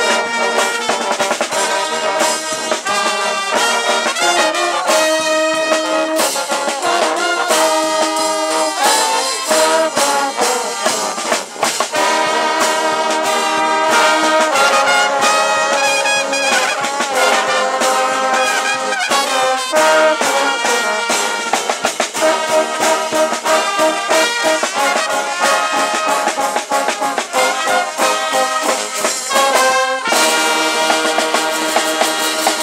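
Dweilorkest (Dutch street brass band) playing loudly: trombones, trumpets and tuba over snare drum and cymbal.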